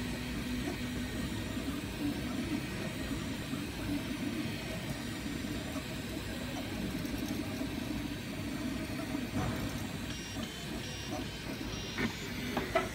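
Ultimaker 3D printer printing: its stepper motors hum in shifting tones as the print head moves back and forth, over the steady hiss of the print-head cooling fans.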